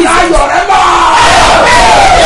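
A man's loud, drawn-out shout in fervent prayer, the cry sinking in pitch through the second half.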